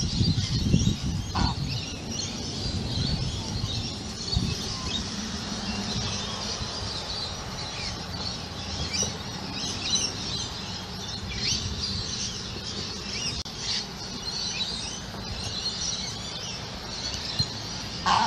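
Australian white ibis giving low, honking grunts in the first second, then many small birds chirping over a steady low background rumble.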